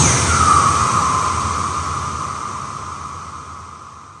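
The closing tail of a dubstep track: a wash of electronic noise with one held high tone, fading out steadily after the last beat.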